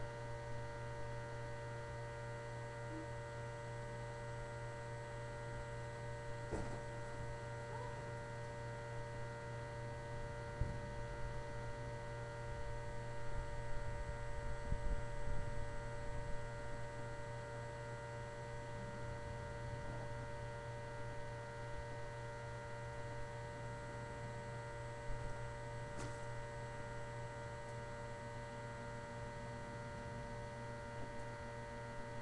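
Steady electrical hum made of several constant tones, with a faint low rumble swelling around the middle and a couple of faint clicks.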